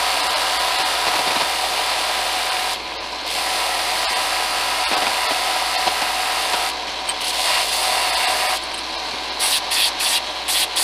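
Belt sander running with the end of an aluminium bearing tube pressed against the belt, squaring it off. The grinding rasp over the steady motor hum eases for a moment three times as the tube is lifted off. Near the end it comes and goes in short touches.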